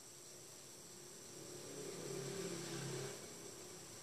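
Quiet room tone with a steady faint high hiss; about halfway through, a faint low hum swells for a second and a half, then fades.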